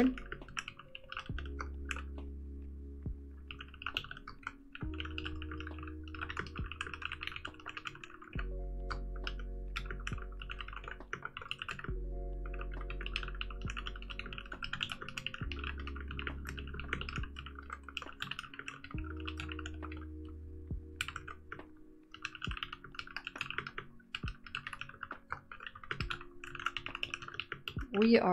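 Fast touch-typing on a mechanical keyboard, runs of key clicks broken by short pauses. Background music with held chords and a low bass that change every few seconds plays underneath.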